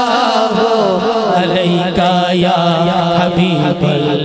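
A man's amplified solo voice reciting a naat in a long, drawn-out sung line with wavering, ornamented pitch, over a steady low drone.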